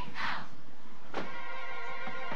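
A short shout at the start, then about a second in a drum hit and the marching band's brass come in on a held chord.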